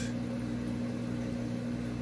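Saltwater aquarium equipment, such as a return pump, running: a steady low electrical hum over a faint even hiss.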